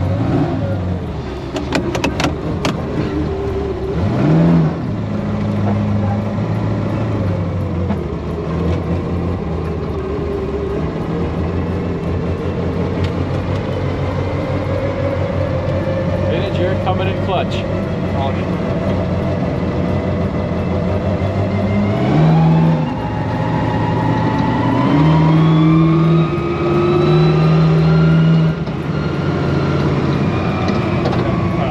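Cab-interior sound of a 1978 Ford F-250 prerunner's 575 cubic-inch big-block V8 driving off at low speed: a steady low engine note with short revs about four seconds in and again around twenty-two seconds. After that the engine pulls harder in steps, its pitch climbing over the last several seconds.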